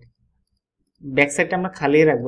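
Near silence for about a second, then a man's voice starts speaking.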